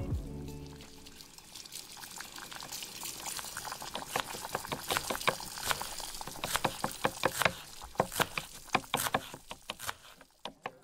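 Soundtrack music fades out in the first second, giving way to a hiss full of irregular sharp crackling clicks, like pouring or trickling water, that grow denser and louder towards the end.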